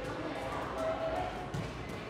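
Indistinct voices in a room, with a dull thud about one and a half seconds in.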